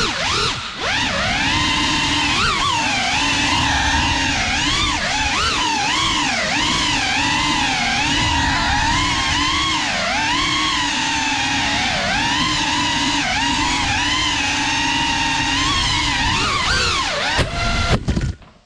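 The brushless motors and ducted propellers of a Geprc Cinelog 35 FPV cinewhoop drone, heard from the onboard camera, whine in a pitch that constantly rises and falls with throttle. Near the end there is a surge in the sound as the drone crashes, and the motors cut out at the very end.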